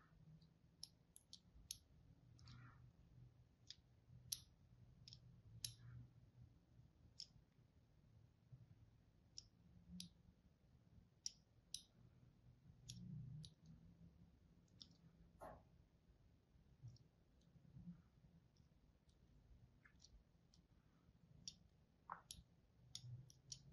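A fine blade scoring thin cuts into a hard bar of soap, making faint, crisp clicks that come irregularly, a few at a time.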